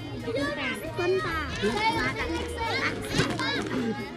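A group of small children talking and calling out over one another in high voices.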